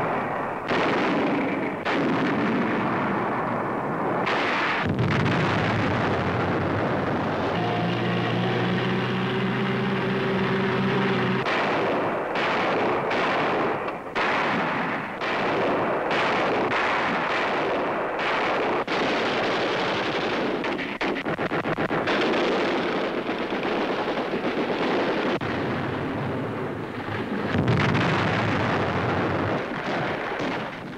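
Battle gunfire on an old newsreel soundtrack: repeated shots and heavier blasts over a continuous rumble, with quick strings of shots through the middle. A steady droning hum sounds for a few seconds, about eight seconds in.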